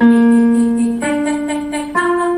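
Digital keyboard playing notes of an arpeggio for a vocal exercise, each held for about a second, the second a step higher than the first.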